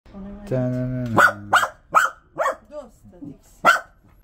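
A dog barking, about five short sharp barks spread over a few seconds, the first coming just after a held steady tone.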